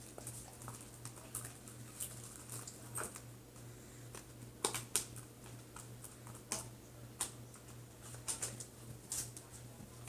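Homemade slime being kneaded and squeezed by hand, giving a faint, irregular string of small sticky clicks and pops; the slime is still a little sticky while activator is being worked in. A steady low electrical hum runs underneath.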